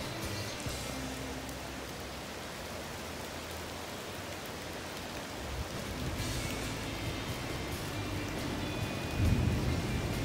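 Steady rain falling on a river during a thunderstorm, with a low rumble of thunder growing louder near the end. Soft background music plays underneath.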